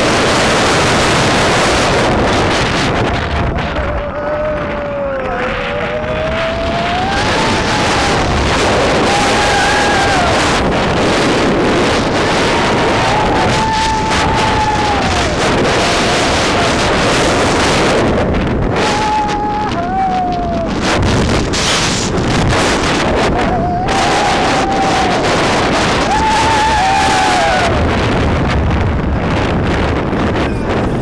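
Steel hyper roller coaster train running at speed, with a loud rush of wind on the microphone and the rumble of the train on its track. Riders' drawn-out screams rise and fall again and again over the noise.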